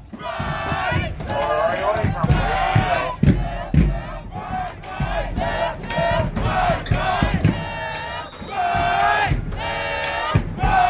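Group of high school marching band members chanting and shouting together in repeated phrases with long drawn-out vowels, with irregular low thumps beneath.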